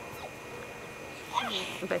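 A seven-week-old puppy gives a brief high whimper about one and a half seconds in, over a low, steady background.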